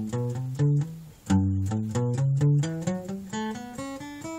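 Steel-string acoustic guitar playing an ascending single-note scale run across the strings, one plucked note after another. The first run fades out about a second in. A second run starts again from the bottom and climbs steadily higher.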